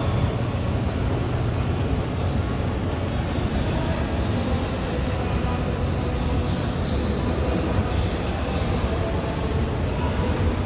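A 1982 Montgomery G&P escalator running, heard from its moving steps: a steady low rumble of the step band and drive with a faint hum.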